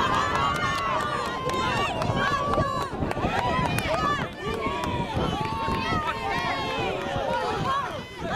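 Many voices shouting and calling over each other, players on the pitch and spectators on the sideline, with the patter of running footsteps on grass.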